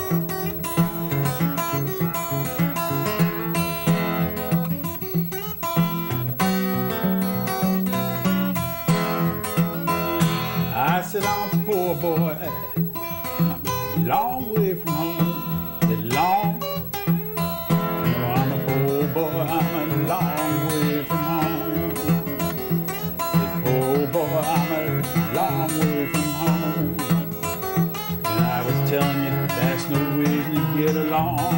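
Solo acoustic steel-string guitar played with a capo, a steady bass line running under picked melody notes.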